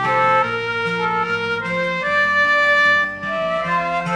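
Instrumental passage of a folk song with no singing: a melody of held notes moving over sustained lower notes.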